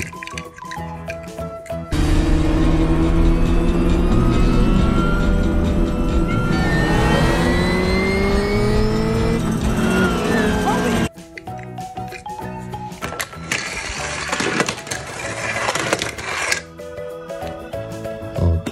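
Soundtrack of an animated stock-car race scene: race car engines revving, rising in pitch, over film music. It starts about two seconds in and cuts off abruptly about eleven seconds in, leaving quieter background music.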